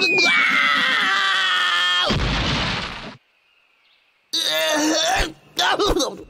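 Cartoon fall and crash: a whistling tone that drops in pitch over a yell for about two seconds, then a heavy crash of impact that dies away into about a second of silence. A man's groans follow near the end.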